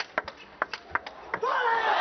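Table tennis rally: a celluloid-type plastic ball clicking sharply off the rackets and the table in quick, uneven succession. About a second and a half in, the clicks stop and crowd noise rises as the point ends.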